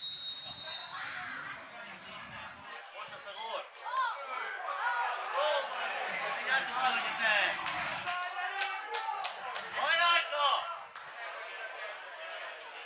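A short, high referee's whistle blast right at the start, then football players shouting to each other on the pitch during the set piece, with a few sharp knocks of the ball being kicked near the end.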